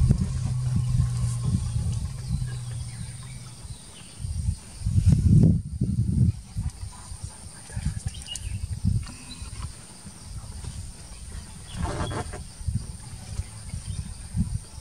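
Female Asian elephant rumbling: a steady, very low rumble that ends about three and a half seconds in. A louder low sound follows a couple of seconds later.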